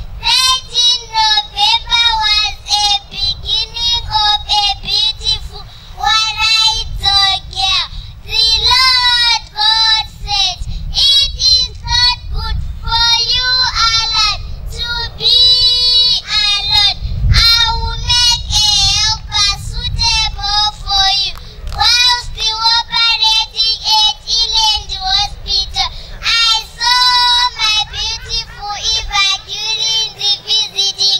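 A young girl singing solo into a microphone: a high voice with a wavering vibrato, phrase after phrase with short breaths between.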